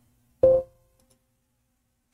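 A single short Windows alert chime about half a second in, ringing out over about half a second. It is the sound of a warning dialog asking for confirmation before loads are assigned to the selected beams.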